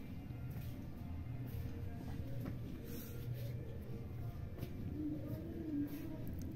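Soft background music over the faint scraping and tapping of a flat metal spatula stirring and roasting grainy semolina in an aluminium kadhai.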